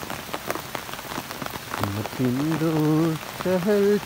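Steady rain pattering, with sharp close drop hits. About two seconds in, a man's voice starts singing in long held notes, louder than the rain.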